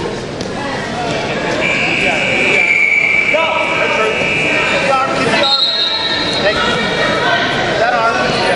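Voices calling out in a large hall, with a steady high tone held for about two seconds starting a second and a half in, and a shorter, higher tone about five and a half seconds in.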